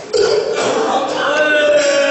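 A man's amplified voice declaiming in a drawn-out, sung tone, breaking in loudly just after the start and holding a long note through the rest.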